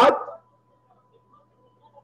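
A man's voice drawing out a single word, then near silence with a faint steady hum from the call's audio.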